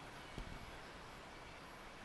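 Quiet room tone, with one faint knock a little under half a second in.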